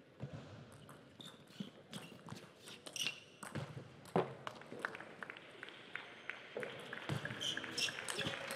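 Table tennis ball clicking sharply off the bats and table in an irregular run of ticks, with a few louder knocks around three to four seconds in.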